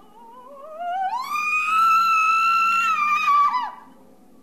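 A single high wavering wail slides upward over about a second, holds loud with a steady vibrato, then dips briefly and breaks off near the end.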